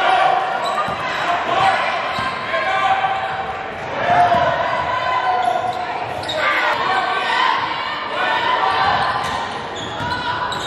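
Basketball bouncing on a hardwood gym floor during a game, with untranscribed voices from players and spectators echoing through the large gym.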